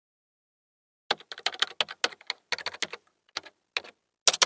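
Computer keyboard typing: a quick run of key clicks in short bursts, starting about a second in.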